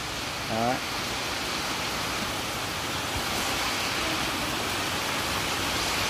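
A steady, even hiss, with one short spoken syllable about half a second in.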